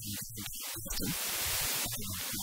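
Steady hiss of static, thickening about a second in, over faint muffled low sounds.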